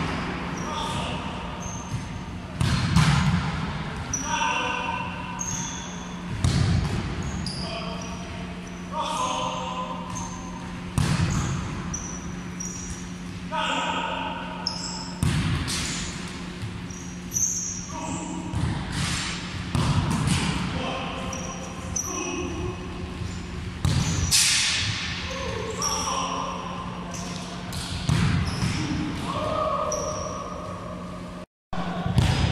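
Futsal balls struck by kicks and smacking into a goalkeeper and the wooden floor of a reverberant sports hall, a sharp impact every few seconds, with shoes squeaking on the floor between them. A steady low hum runs underneath.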